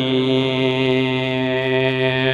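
Unaccompanied chanting of a khassida, a Mouride devotional poem, holding one long steady note on the refrain.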